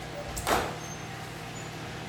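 Quiet room tone with a steady low hum, broken once about half a second in by a short, sharp burst of noise that starts with a click.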